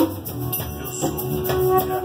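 Live acoustic band rehearsal: a wooden hand drum and a shaker keep a steady rhythm over sustained pitched notes, opening on a strong hit.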